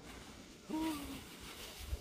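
A man's short, soft "hoo" of delight, gliding slightly down in pitch, about two-thirds of a second in; the rest is faint background.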